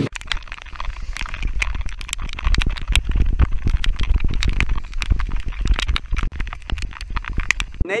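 Wind buffeting the microphone of a hand-held action camera, a heavy gusting rumble, with many irregular sharp clicks throughout.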